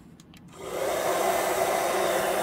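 Remington hand-held hair dryer switched on about half a second in, its fan rising quickly to a steady rush of blown air, set to medium heat.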